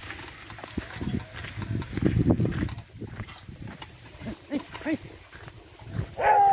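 A bullock-drawn wheeled plough working across tilled soil, with low rumbling and rattling that is loudest about two seconds in. Near the end come two or three short vocal calls urging the bullocks on.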